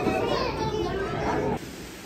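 Children's voices and crowd chatter, with no clear words, cutting off abruptly about one and a half seconds in to quieter room tone.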